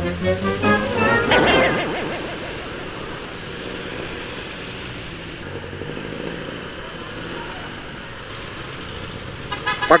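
Steady road and traffic noise of a motor scooter riding through city traffic, under background music. In the first two seconds there are pitched sounds that rise in pitch, and a voice starts near the end.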